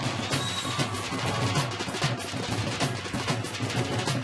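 Live band music led by several Punjabi dhol drums beating a dense rhythm, with drum kit and electric guitar. The whole band comes in at once at the start, after a quieter guitar passage.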